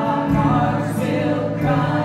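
A worship song sung live: a man's voice with acoustic guitar strumming, and several other voices singing along.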